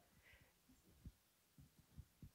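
Near silence: room tone, with a faint low thump about a second in.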